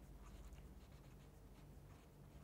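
Very faint felt-tip pen writing on paper, barely above a low steady room hum.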